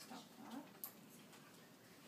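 Near silence: room tone with faint handling sounds and one brief sharp click just under a second in.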